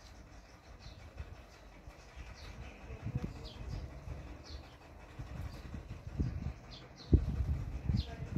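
A small bird chirping over and over in short, high, falling notes, roughly two a second, over low rumbles and thumps that are loudest near the end.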